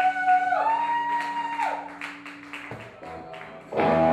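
Live rock band ending a song: a held high note bends upward over a steady low chord, then the chord stops after about two and a half seconds and the sound dies away. A loud burst of music comes back in near the end.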